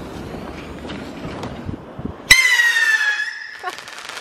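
Stick-mounted firework rocket: its fuse hisses for about two seconds, then a loud high whistle starts suddenly, gliding slightly down in pitch and fading over about a second and a half as it goes up.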